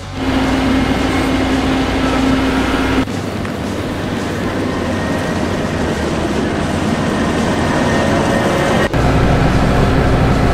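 Tractor engine running with a front-mounted cutter snow blower chewing through and throwing heavy snow. A steady hum sits on top for the first three seconds, and the sound changes abruptly about three seconds in and again near nine seconds.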